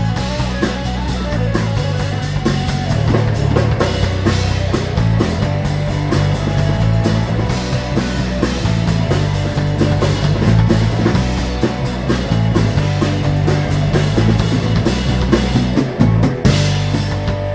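Live rock power trio playing an instrumental passage: a Telecaster electric guitar over bass guitar and a drum kit, with bass notes changing every second or so and steady cymbal strokes.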